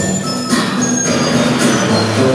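A small band playing live music: a drum kit with repeated cymbal strikes over held guitar notes, and a few short, thin high tones.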